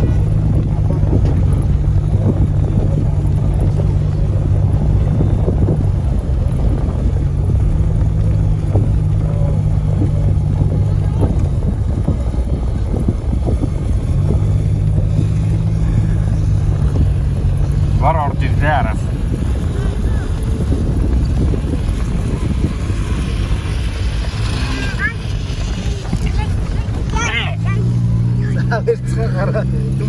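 Vehicle engine and tyres running over rough ground, with a steady low drone that drops away and comes back several times and steps up in pitch near the end, and wind buffeting through the open window. Brief high calls are heard about 18 seconds in and again near the end.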